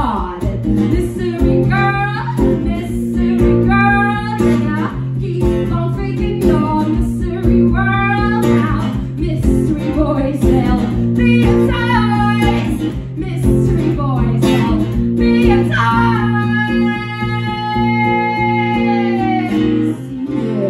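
A woman singing over a strummed acoustic guitar, the closing bars of a song. Near the end she holds one long note that bends down as it fades.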